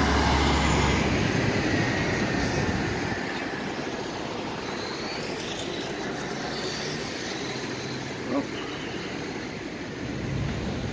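A car-carrier truck passing close, its low engine rumble loud at first and fading over the first few seconds, then steady city traffic noise, with a brief thump near the end.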